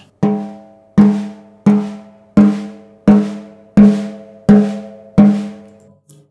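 Snare drum with its snare wires off, its top head tapped with a finger near the edge at each tension rod in turn: eight evenly spaced taps, each ringing at the same pitch. The matching notes show that the batter head is evenly tensioned all around, which is pretty much correct.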